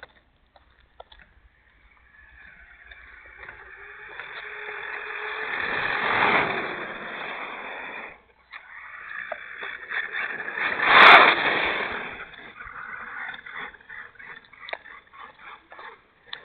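Rushing wind and road noise on a camera riding a moving vehicle. It swells twice, peaking about six and eleven seconds in, and drops out suddenly around eight seconds. There is a sharp knock near the second peak, and patchy rumbles follow.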